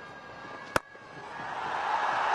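Single sharp crack of a cricket bat striking the ball, a little under a second in, followed by stadium crowd noise swelling as the shot goes toward the boundary.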